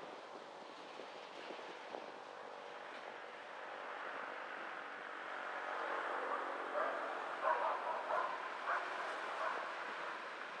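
Car driving slowly along a street, a steady road and engine noise. In the second half, a run of short, sharp calls stands out several times over it.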